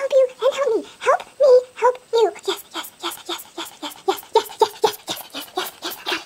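A woman's frightened whimpering and panting, sped up to a chipmunk-like pitch. It comes as rapid short squeaks, about four to five a second from about two seconds in.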